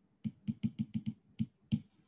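Stylus tip tapping on a tablet's glass screen while handwriting a word: about eight sharp clicks in a quick, uneven run, the last one the loudest.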